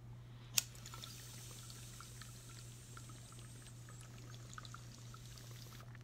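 A single sharp click, then faint, irregular bubbling of water in a glass bong as smoke is drawn through it, lasting about five seconds.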